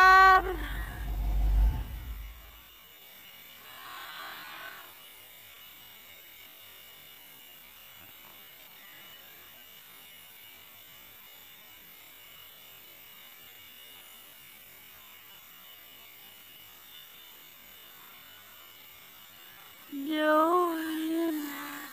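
A person's loud, wavering vocal cry trails off in the first second, over a low rumble. Then a faint, steady, high-pitched buzz of night insects runs on with a soft hiss.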